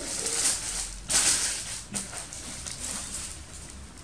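Tissue paper rustling and crinkling as it is pulled back inside a shoe box, in irregular bursts, the loudest about a second in, then softer rustling.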